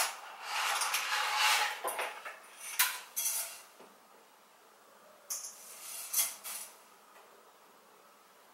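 Dry spaghetti rattling out of its cardboard box into a metal cooking pot, with clinks against the pot. It comes in a few short bursts with quiet gaps between.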